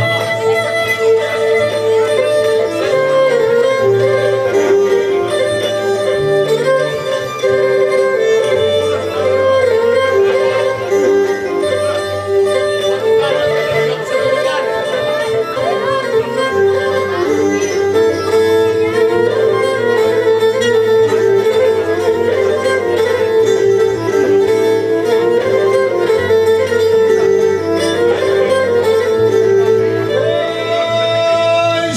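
Pontic lyra (kemenche) bowing an instrumental passage of a Pontic Greek folk tune, its melody held over a drone, with acoustic guitar chording and bass notes underneath.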